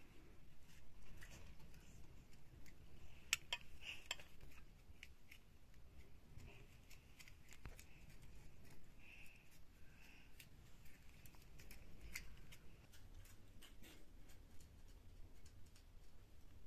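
Faint clicks, taps and scrapes of metal spoons against a stainless steel bowl as herbed rice filling is scooped out, with a few sharper ticks about three to four seconds in.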